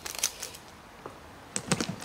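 A few light clicks and taps of small objects being handled and set down on a tabletop: a cluster at the start and a couple more near the end, with quiet in between.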